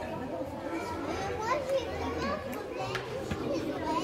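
Indistinct chatter of children's voices, with one short sharp click about two and a half seconds in.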